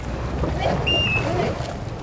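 Wind rumbling on the microphone over the river, with blurred distant voices and a short high tone about a second in.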